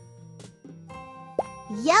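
Light children's background music with a short cartoon plop, a quick upward-gliding pop, about a second and a half in: the drawing app's sound effect as the yellow pencil is picked. A voice begins naming the colour right at the end.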